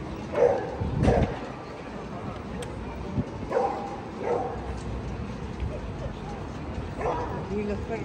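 A dog barking in short bursts, about five times, over the chatter of passers-by.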